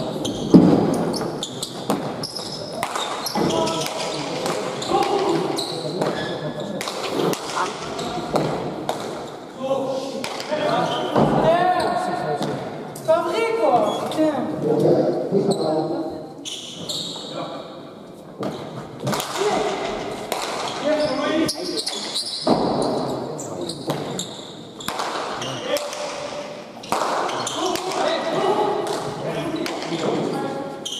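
Hand pelota rallies in a trinquet court: the hard ball smacking off bare hands, the walls and the floor in sharp repeated impacts, with voices calling out between shots.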